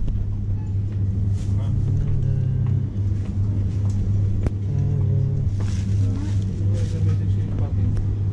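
Supermarket background: a loud steady low hum, faint voices of other shoppers, and a few sharp crackles of a plastic produce bag as potatoes are picked from the crate.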